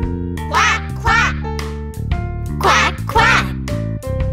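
Duck quacks, 'quack, quack', heard twice as two pairs of short calls over a bouncy children's song backing.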